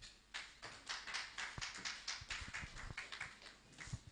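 Handling noise on a handheld microphone as it is moved and set at a lectern: an irregular run of rustles and taps over about three seconds, with a few low thumps.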